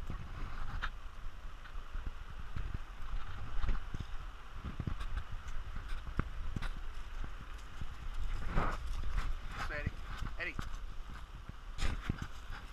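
Footsteps and a dog's paws on a dirt trail strewn with dry leaves: irregular scuffs and knocks over the steady rush of a creek. Brief voices come in about two thirds of the way through.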